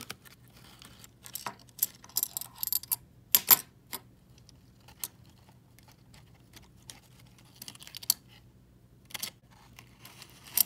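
Half dollar coins in a partly unwrapped paper roll clicking lightly against one another as they are thumbed along the stack. The clicks come in small irregular clusters, busiest between about one and four seconds in, then sparse.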